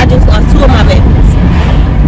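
Steady low rumble of a moving minivan's road and engine noise, heard from inside the cabin, under a woman's talking.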